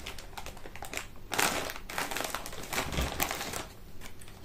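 Large plastic crisp packet crinkling and rustling in irregular crackles as a hand rummages inside it for a crisp, with the densest rustle about a second and a half in.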